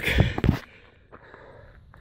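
A short breath from a man winded after an uphill hike, with a single light click, then faint steady outdoor background.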